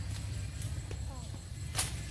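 Weeds and brush being cut by hand with a blade: one sharp swishing chop near the end, over a steady low rumble.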